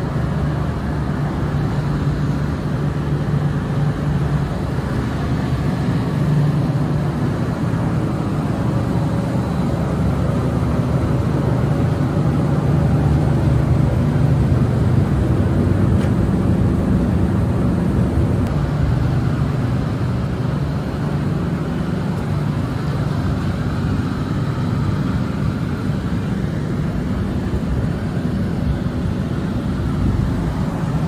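Steady low rumble of city background noise, swelling a little around the middle.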